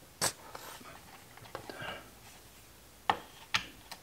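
Sharp clicks and small scrapes of a metal hand tool pressing against the Stihl 180 chainsaw's plastic housing as a tight rubber dampener plug is forced into place. There is one loud click about a quarter second in and two more about three and three and a half seconds in.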